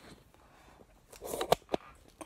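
Handling noise from a phone being swung round: a brief rustle, then two sharp clicks close together.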